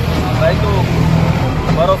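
Road traffic: a vehicle engine rumbling low, swelling for about a second and a half and then easing off, under a man's voice.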